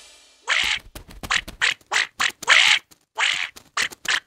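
Cartoon duck quacking: a quick run of about ten short quacks, starting about half a second in as the last music chord dies away.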